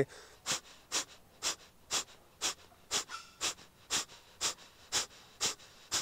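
Kapalbhati breathing: a man's rapid, forceful exhalations through the nose, thrown out like a bellows, about two a second in an even rhythm, eleven strokes in all.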